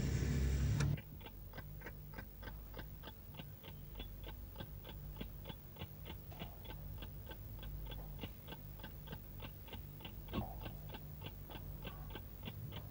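A loud sound cuts off about a second in, followed by a steady clock ticking at about three ticks a second over a low hum.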